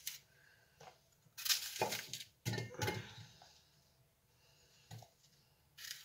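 Kitchen knife cutting through fresh apples, with apple pieces dropping into a glass jar: two main bursts of crisp cutting and clatter, and a couple of small clicks.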